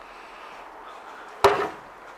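Faint steady outdoor background, then a single sharp knock about one and a half seconds in, followed at once by a man saying a word.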